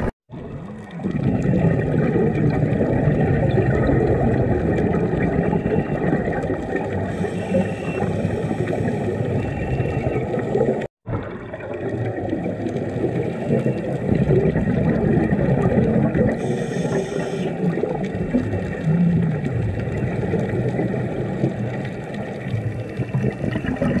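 Underwater sound picked up by a camera in its housing: a steady, muffled rush of water and bubbles, with two short hisses, about seven and sixteen seconds in. The sound cuts out completely for a moment twice, just after the start and about eleven seconds in.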